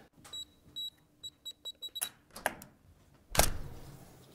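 A quick run of short, high electronic beeps, about ten in under two seconds like a keypad being pressed, followed by a few clicks and a single loud thump near the end.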